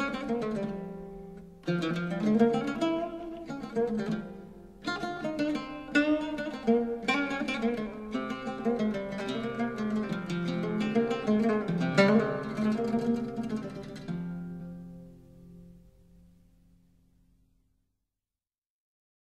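Solo oud improvising a taqsim in maqam Rast: phrases of plucked notes with sharp attacks, ending on a final note that rings on and fades away to silence near the end.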